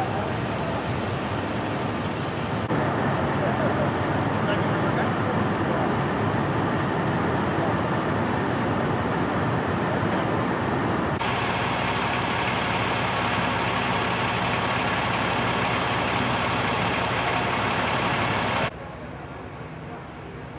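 A fire ladder truck's diesel engine running steadily, with indistinct voices underneath. The sound shifts abruptly about 3 and 11 seconds in, and drops much quieter shortly before the end.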